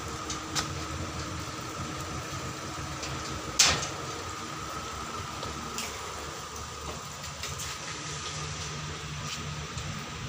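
Steady background hum and hiss with a few small clicks, and one sharp loud click about a third of the way in.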